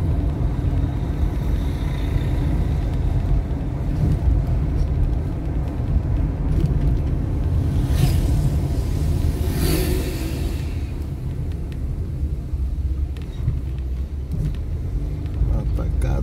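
Low, steady engine and road rumble inside a car driving slowly along a street, with a louder rushing noise for a couple of seconds around the middle.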